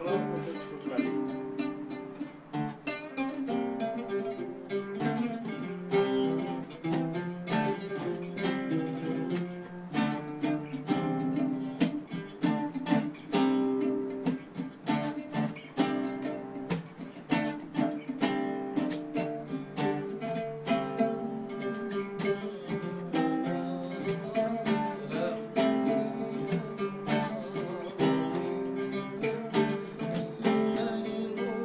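Instrumental music: a plucked string instrument plays a busy melodic line of quickly picked notes, with no singing.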